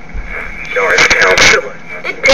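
A voice from an AM radio broadcast played through the small speaker of a 1972 Panasonic Panapet transistor radio, loudest in the second half.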